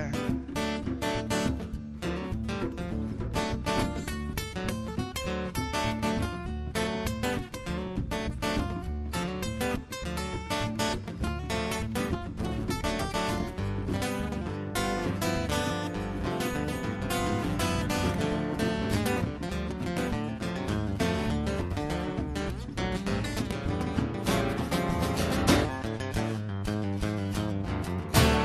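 Acoustic guitars strumming an instrumental break at a quick, steady beat, with a djembe hand drum keeping time.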